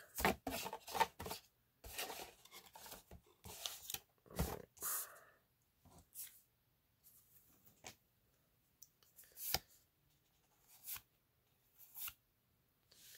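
Magic: The Gathering cards being handled in the hand: a string of short, quiet clicks and rustles over the first five seconds, then a few single ones, the last as a card is slid to the back of the stack near the end.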